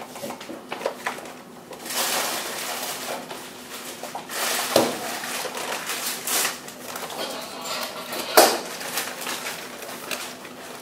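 A plastic bag of shake powder rustling as it is handled and scooped from, with two sharp knocks, the second a few seconds after the first.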